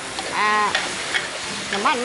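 Sliced chicken and garlic sizzling in hot oil in a wok, stirred and scraped around with a metal spatula.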